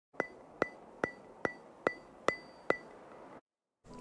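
A text-reveal sound effect on the title card: seven sharp clicks, evenly spaced about 0.4 s apart, each with a brief high ring.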